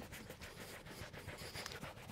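Faint rubbing of a microfiber towel scrubbed back and forth by a gloved hand over a synthetic vegan-leather car seat, working a coffee stain out, in a few soft repeated strokes.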